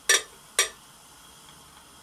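Two brief splashes about half a second apart as thin, freshly distilled styrene is poured from a glass tube onto the wall of a glass dish.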